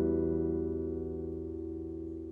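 An acoustic guitar chord left ringing, slowly fading away with no new notes played.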